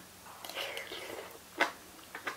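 Quiet mouth sounds of someone eating rice noodles and salad from a spoon: soft chewing, with a sharper smack about one and a half seconds in.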